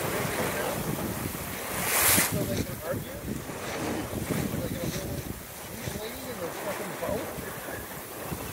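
Water rushing and splashing along the hull of an S2 9.1 sailboat under way through choppy water, with wind buffeting the microphone. A loud burst of spray comes about two seconds in.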